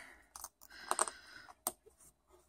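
Metal tweezers clicking and scraping against a small magnet and plastic clip, prying the magnet off the back of the clip. A handful of light, irregular clicks.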